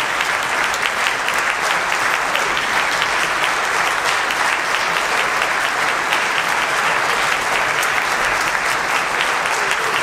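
Concert audience applauding steadily, many hands clapping at once without a break.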